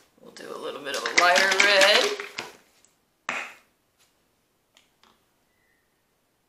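A person's voice, heard briefly for about two seconds, then a single short sharp noise a little over three seconds in.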